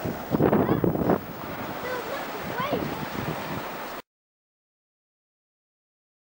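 Sea wind buffeting the camcorder microphone over surf, strongest in the first second, with a few faint high calls. The sound cuts off to silence about four seconds in.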